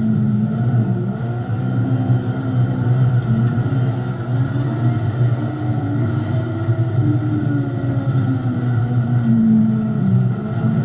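Dwarf race car's engine heard from inside its cockpit, running hard at racing speed. Its pitch rises and falls repeatedly as the throttle comes off and back on.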